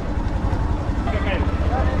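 Motorcycle engine idling with a steady low rumble, heard close up from the sidecar. Faint voices talk over it.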